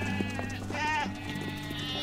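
Sheep bleating: several short, wavering bleats, one after another, over a steady low hum.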